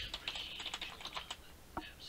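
Computer keyboard keys clicking in a quick run of about a dozen presses, then a single press near the end.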